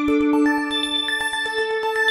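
Emulated Access Virus C synthesizer playing the "NiceArp JS" preset: a fast arpeggiated run of short pitched notes over held tones, moving to a new pitch about every half second.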